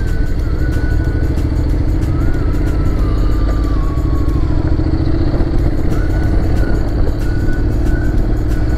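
Adventure motorcycle's engine running as the bike rides along a dirt road, with a heavy low rumble and an engine note that climbs slowly and steadily.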